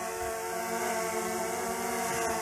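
DJI Mavic Air 2 quadcopter hovering just above the ground at the end of a return-to-home descent, its propellers giving a steady whine of several tones.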